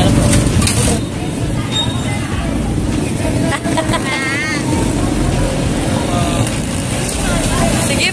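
Motorcycle engine of a tricycle running at idle, a steady low rumble, with brief voices around it.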